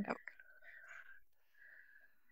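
A person's voice, faint and breathy, after a spoken word trails off at the start.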